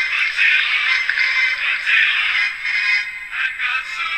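Cartoon opening theme music playing through the small built-in speaker of a second-generation iPod touch, thin and without bass.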